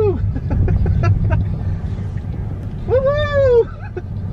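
Steady low road and wind rumble inside a moving Tesla Model 3, an electric car, so there is no engine note. About three seconds in, a person lets out one drawn-out vocal exclamation that rises and then falls in pitch.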